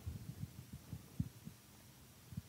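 Faint, irregular low thumps and bumps of a handheld microphone being handled, with one firmer knock a little past the middle.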